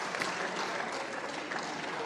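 Applause from a group of people, many hands clapping at once at a steady level.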